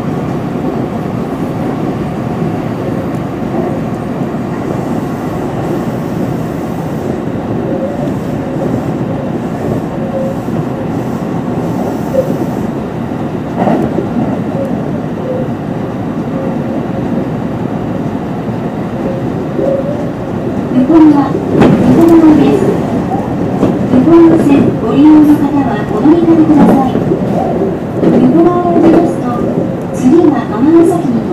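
Electric commuter train running at speed, heard from the front cab: a steady rumble of wheels and running gear, with one sharp clack of a rail joint about halfway through. In the last third a man's voice speaks over the running noise.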